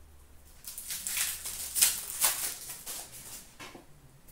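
Crinkling of a foil hockey-card pack wrapper and rustling of trading cards being handled, in an irregular run of scratchy bursts that starts about half a second in and dies away near the end.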